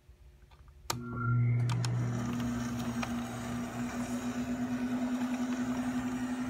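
A switch clicks on a restored electric player piano, and its motor-driven suction pump starts and runs with a steady hum and a fast, even pulse while the paper music roll begins to turn.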